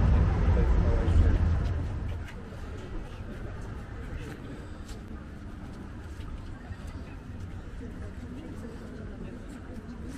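City street traffic noise, loud and rumbling for about the first two seconds, then dropping suddenly to a much quieter street background with faint voices.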